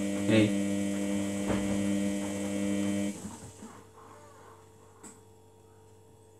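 Samsung WF80 front-loading washing machine's drum motor running with a steady whine as the drum tumbles the wash, with two brief knocks. The motor stops about three seconds in and the drum comes to rest, a pause between tumbles in the wash phase, leaving only a faint tick near the end.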